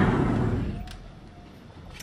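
Sliding closet door rolling along its track, with a rustling, rumbling noise that fades away over the first second, then a faint click.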